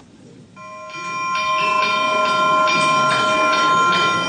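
Church bells ringing, several strikes over a sustained ring, starting about half a second in.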